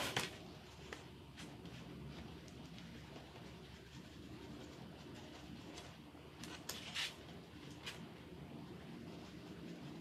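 Quiet room with a few faint clicks and taps of craft materials being handled on a tabletop, the clearest about seven seconds in.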